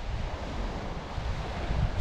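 Surf washing on the beach, a steady rushing noise, with wind rumbling on the microphone.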